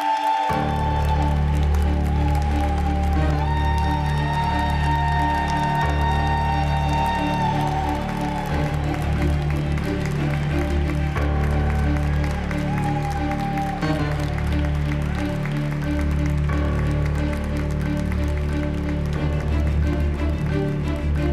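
Background music for a television show: a heavy, pulsing bass beat comes in suddenly about half a second in, with held tones above it.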